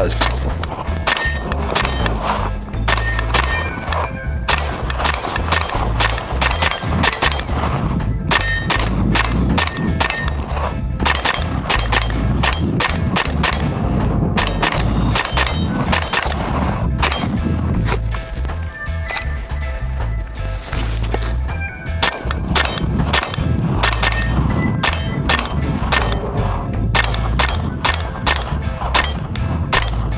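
Ruger PC Carbine 9mm semi-automatic carbine firing a long, fast string of shots, several a second, with metallic ringing between them. It runs through Glock magazines of 124-grain ammunition without a stoppage.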